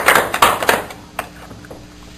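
Small audience applauding, the clapping dying away within the first second; then a single faint click and quiet room tone.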